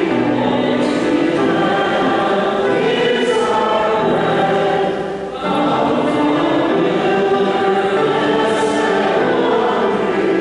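Church choir singing a hymn in long held phrases, with a brief break between phrases about five seconds in.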